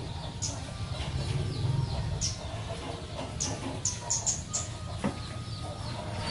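A broom sweeping the ground in several short, sharp strokes, while chickens cluck in the background.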